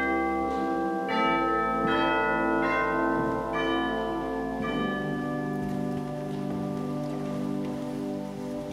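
Organ playing slow, sustained chords that change about once a second at first, then holds one long chord from about five seconds in.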